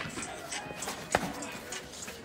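Feet shuffling on gravel during slap boxing, with one sharp slap about a second in, an open-hand hit landing that stings.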